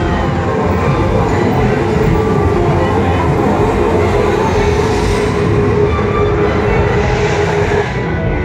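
Rumbling train sound effect from the projection show's soundtrack, played over the dome's speakers, with a steady held tone under it.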